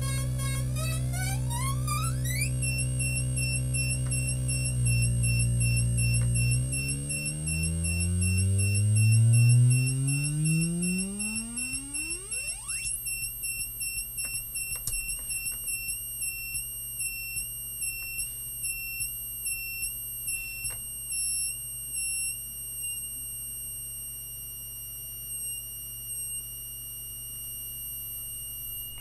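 MFOS Weird Sound Generator, a DIY analog noise synth, being played by turning its knobs: a low buzzing drone under high, wavering whistles. Its low pitch then sweeps steeply upward and disappears just before halfway, leaving high steady tones that pulse about twice a second.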